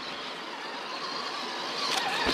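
Traxxas TRX4 Sport RC rock crawler's electric motor and geared drivetrain whirring steadily as it crawls over rock.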